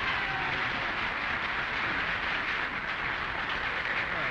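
Studio audience laughing and applauding, a steady sound of many hands and voices at an even level throughout.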